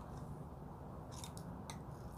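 Small metal clicks from a bracelet watch's band and clasp being fastened around a wrist: a quick run of sharp clicks a little past halfway and one more shortly after.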